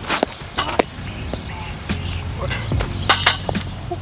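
Lacrosse shot on goal: a sharp crack as the stick whips the ball into the net, a lighter knock just under a second later, then two more sharp knocks in quick succession a little after three seconds in, with footsteps on the turf between them.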